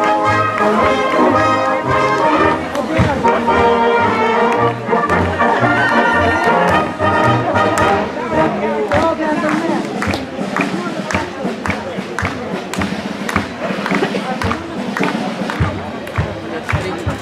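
Brass band playing folk dance music, a brass tune over a pulsing oom-pah bass. From about halfway through the tune thins and a busy patter of sharp claps comes to the fore.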